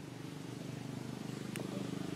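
A motor running with a rapid, even low pulse, growing louder, with a faint tick about one and a half seconds in.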